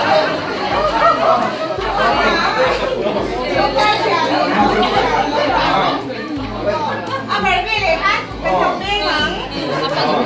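Several people talking at once in a room: overlapping chatter.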